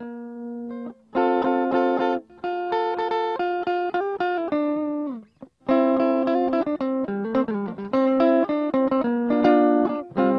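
Guitar being strummed and picked, chords ringing out with a few notes that slide in pitch. It breaks off briefly just past halfway, then the strumming resumes.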